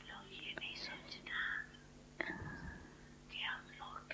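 A faint, whisper-like voice speaking in short snatches, over a steady low electrical hum, with one sharp click about two seconds in.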